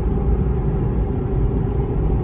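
Car driving at highway speed, heard from inside the cabin: a steady low rumble of tyres and engine with a faint steady hum.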